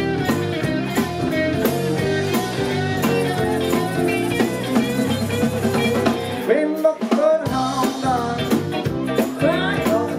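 Live blues-rock band playing: guitars, keyboard, drum kit and tambourine, with a harmonica over the top. About six and a half seconds in, the bass and drums drop out for about a second before the full band comes back.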